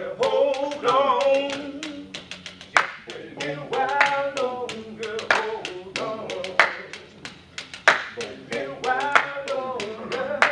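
Men's voices singing, with hand claps keeping a steady beat throughout, a few of them louder than the rest.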